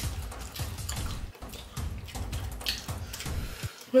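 People eating noodles: chewing and mouth sounds, with many small scattered clicks.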